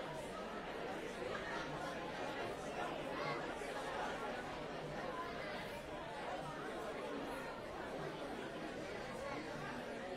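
Congregation chatting: many overlapping conversations at once, a steady hubbub of voices with no single voice standing out.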